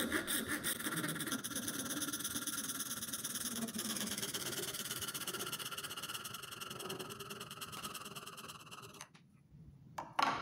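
A K-D Tools Convertible Model 99 hacksaw with a short homemade 3-inch blade sawing through a white plastic pipe. The footage is sped up three times, so the strokes come as a fast, steady rasp. The rasp stops about nine seconds in, as the cut goes through.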